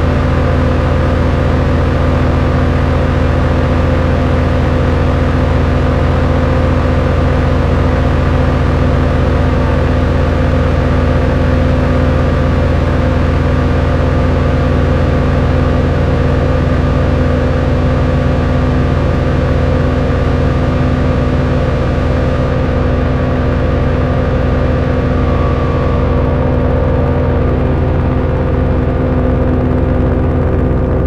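Behringer analog synthesizers playing a loud, steady noise drone of many stacked sustained tones with a heavy low end, through reverb and delay. The top end grows duller in two steps in the last third.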